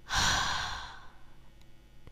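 A single long breathy exhale, like a sigh, loudest at the start and fading out within about a second.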